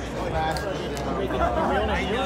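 Indistinct chatter of several voices over the low background hum of a busy hall.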